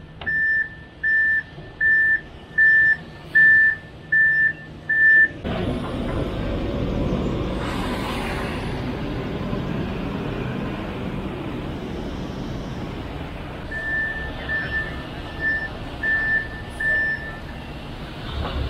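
Concrete mixer truck's backup alarm beeping steadily, about three beeps every two seconds, as the truck is moved. About five seconds in the beeping gives way abruptly to a steady rumbling noise, and the backup beeps return faintly near the end.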